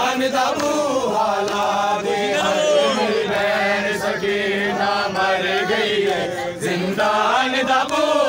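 A crowd of men chanting together in a mourning chant, many voices overlapping, over a steady low hum.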